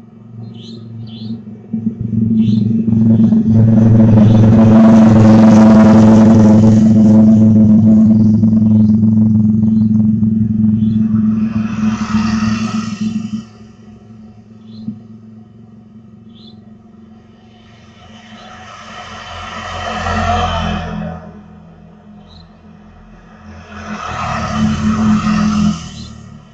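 Motorbikes passing along a street, each engine swelling as it nears and fading as it goes. Before them, a loud steady hum holds for about ten seconds and then stops suddenly.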